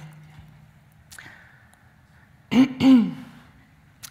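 A woman's short laugh, two quick voiced bursts about two and a half seconds in, after a quiet stretch with a faint low hum.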